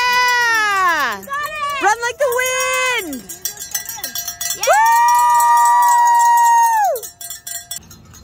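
Spectator's high-pitched cheering yells: three long calls, the last held for about two seconds before dropping off.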